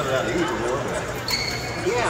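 People talking in a large, echoing hall, with no music playing. About a second and a half in, a brief high steady tone sounds and stops.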